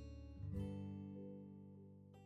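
Background acoustic guitar music: a strummed chord rings out about half a second in and slowly fades.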